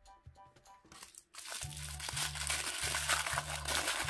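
A crinkly toy-accessory wrapper crinkling loudly as it is unwrapped by hand, starting about a second and a half in, over soft background music with a steady bass beat.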